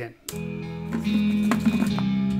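Recorded guitar music playing back through speakers over an AES50 digital snake, starting a moment in after a brief gap. It plays cleanly: the 100-metre cable run is working.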